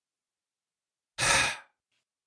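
Silence, then about a second in a man's single short sigh into the microphone, fading out after about half a second.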